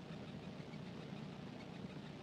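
Quiet, steady room tone: a low, even hum of background noise with no speech.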